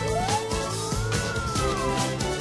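Cartoon background music with a single slow whine from the animated fire truck, rising for about a second and then falling, as its ladder extends.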